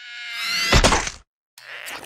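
Cartoon sound effect: a buzzing whir rising in pitch for about a second, ending in a loud thump, with a second rushing noise and thump near the end.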